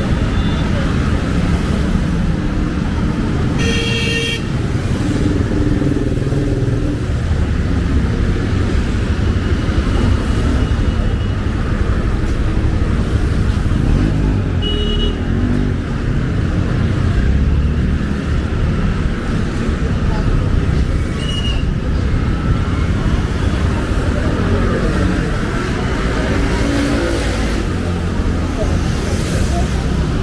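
Road traffic at night, with motorcycles and cars passing in a steady engine and tyre rumble. A vehicle horn sounds about four seconds in, and shorter toots come around fifteen and twenty-one seconds.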